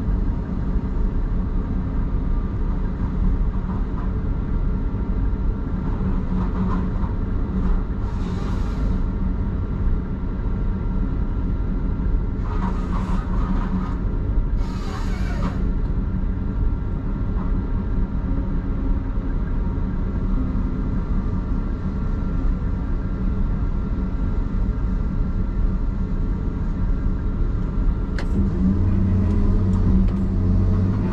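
Log loader's diesel engine and hydraulics running steadily, heard from inside the cab while the grapple works logs, with a thin steady whine above the drone. Three short hissing bursts come in the middle, and about two seconds before the end the engine pulls harder as the boom swings.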